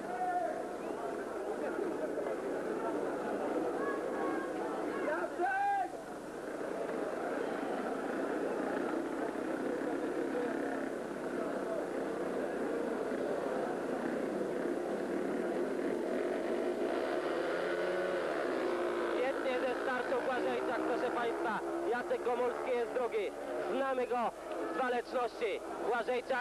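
Two speedway motorcycle engines running and being revved before a race start, with one rise and fall in engine pitch about 18 seconds in.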